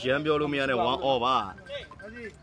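A man's voice talking with a strongly rising and falling pitch for the first second and a half, then dropping away to a quieter stretch.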